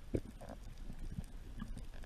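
Muffled underwater knocks and thumps picked up through a camera's waterproof housing, irregular and low, with a short higher sound about half a second in.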